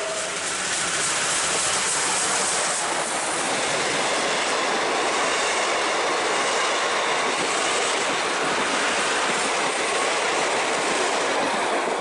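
Steam-hauled passenger train running through at speed, the carriages' wheels loud and steady on the rails, the sound dropping away as the last car clears at the end.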